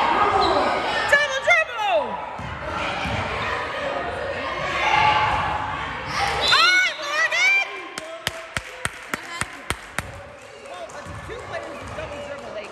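Voices calling out in a gym, with sneakers squeaking on the hardwood floor in quick bursts. From about two thirds of the way in, a basketball is dribbled for about two seconds, about four bounces a second.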